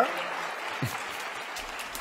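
Large audience applauding: a steady, even clatter of clapping that starts suddenly and holds level.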